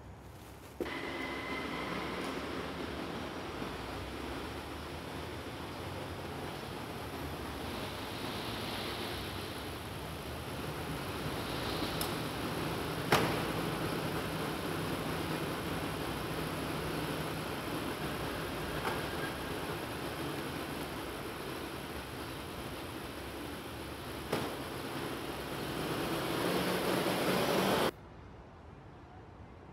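Steady vehicle and car-park noise with a sharp click about halfway through, as a car door is opened. The noise swells near the end and cuts off suddenly.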